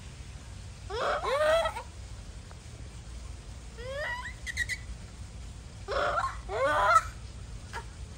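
Japanese macaques calling: three bursts of short, pitched calls with arching and rising tones, about a second in, around four seconds, and between six and seven seconds, the last burst the loudest.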